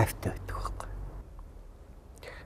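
A man speaking for about the first second, then pausing. A low steady hum sits underneath.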